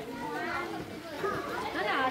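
Indistinct, overlapping chatter of adults and young children's voices from a small crowd.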